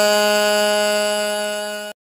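A single long held note, steady in pitch and buzzy in tone, slowly fading and then cutting off abruptly just before the end. It is the closing note of the naat recording.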